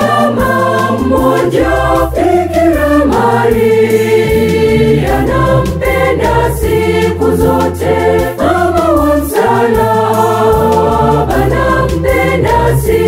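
Choir singing a Swahili gospel song in parts over a backing with a steady bass and a regular beat.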